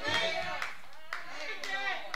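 Congregation responding with scattered hand claps and voices calling out, softer than the preaching around it.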